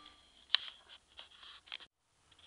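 Quiet room tone with a single sharp click about half a second in and a few faint rustles, cutting off abruptly to dead silence near the end.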